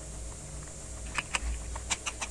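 Spoon clicking and scraping against a glass bowl while stirring glutinous rice flour with water into a batter, with a few light clicks in the second half.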